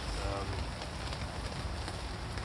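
Steady rain pattering on an open fishing umbrella overhead, with a low rumble of wind on the microphone.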